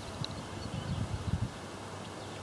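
Light, gusty breeze on the microphone: an uneven low rumble that swells around the middle and eases off toward the end.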